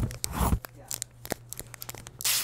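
Pencil-scribbling sound effect, rapid scratchy strokes on paper that stop about half a second in, followed by a few faint scattered ticks.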